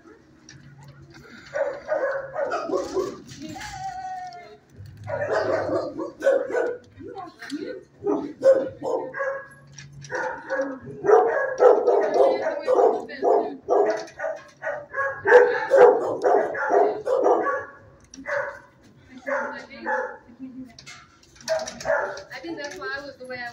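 Dogs barking in animal-shelter kennels, in repeated bouts with only short pauses and a brief lull near the end.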